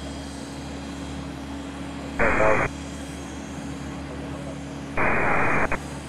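Air traffic control radio feed: a brief clipped radio call about two seconds in and a burst of radio hiss around five seconds, over a steady low hum between transmissions.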